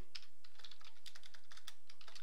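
Typing on a computer keyboard: a quick run of key clicks as a field name is entered.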